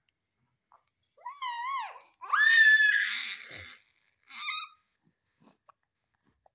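A baby's high-pitched squeals: three wavering cries, the second one, about two seconds in, the loudest and longest.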